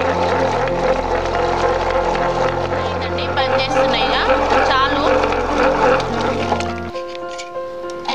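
Table-top stone wet grinder running: its motor gives a steady hum with a slow regular pulse as the stone rollers turn in the steel drum, then it is switched off and stops about seven seconds in.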